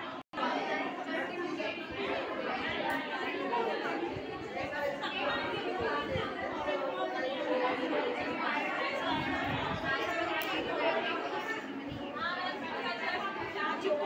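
Indistinct chatter of several people talking at once, with a split-second gap just after the start.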